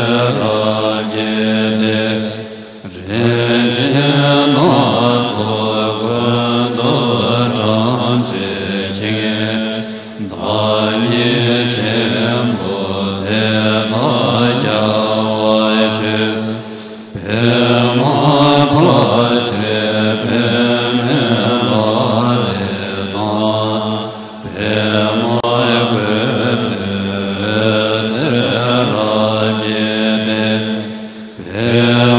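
Chinese Buddhist chant of offering verses, sung to a slow melody in phrases of about seven seconds, each ending in a brief break for breath.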